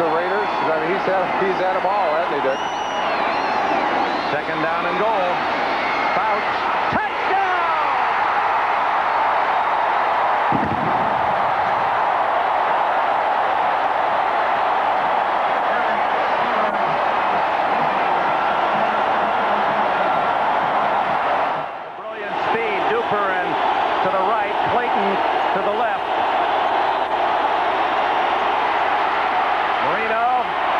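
Stadium crowd noise: a large football crowd cheering and shouting without a break, dipping briefly about two-thirds of the way through.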